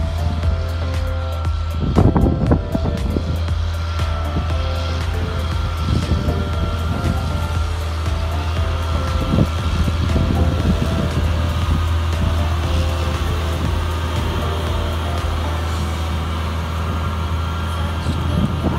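Challenger MT765C tracked tractor's diesel engine running steadily under load while it pulls a land leveller, mixed with background music.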